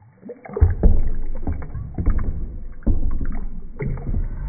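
Water sloshing and splashing as a hand pushes a toy hippo through shallow water in a tub, starting about half a second in, with irregular splashes throughout.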